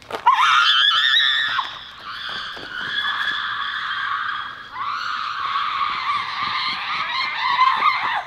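A person screaming: three long, loud, high-pitched screams, each held for a second or more. The pitch wavers through each scream.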